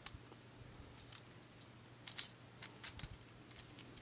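Faint, scattered small plastic clicks and taps from an assembled Beyblade spinning top being handled and turned in the fingers, most of them in the second half.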